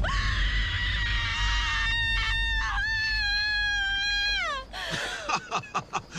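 A woman's long, high-pitched scream of terror, held for about four and a half seconds and sliding down in pitch as it ends, followed by a few short sliding cries near the end.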